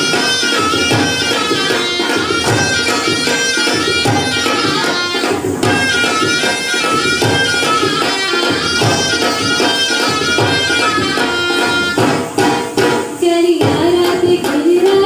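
Haryanvi folk dance music: a wavering, reedy wind melody over steady drumming. Near the end the melody breaks off for a few separate drum strokes before a new section starts.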